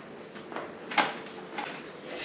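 A few light knocks and clicks, about two-thirds of a second apart, from handling a random orbital sander that is not yet running.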